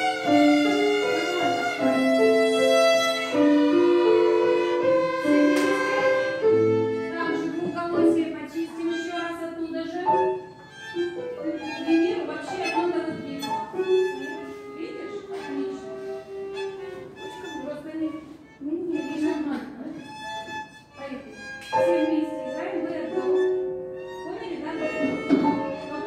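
A children's violin ensemble playing together, several parts at once. It begins with long held notes, then moves into quicker, shorter notes from about seven seconds in, with a brief break near the end before the playing picks up again.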